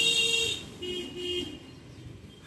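A horn sounds from off-screen: one loud half-second blast, then two shorter, lower-pitched blasts about a second in.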